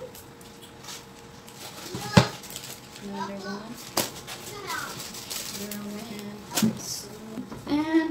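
Grocery items being handled and set down on a table: plastic and foil seasoning packets and cans rustling and shifting, with three sharp knocks as items are put down, about two, four and six and a half seconds in.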